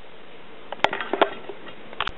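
A few light clicks and taps from tools being handled on a workbench, the sharpest a little under a second in, over a quiet room background.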